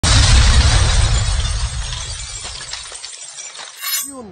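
Logo-intro sound effect: a sudden shattering crash with a deep boom that dies away over about three seconds, then a short rising whoosh near the end.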